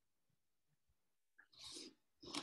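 Near silence, then about one and a half seconds in a faint click and a short, noisy breath lasting about half a second.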